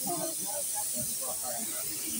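Compressed-air paint spray gun hissing steadily, with faint voices underneath.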